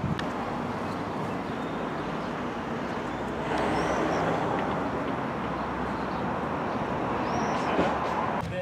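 Steady outdoor background noise, a plain rushing haze with no clear single source, a little louder from about three and a half seconds in.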